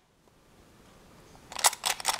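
Metal teaspoons clinking against one another as a hand rummages through a wooden box of spoons. It starts near silent, and a quick run of sharp clinks comes in the last half second.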